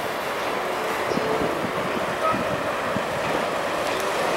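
Steady rail yard noise of trains and their equipment running, with irregular low knocks in the middle.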